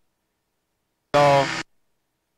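Dead silence, with no engine or wind noise, broken once a little over a second in by a short voiced sound of about half a second, a person's voice.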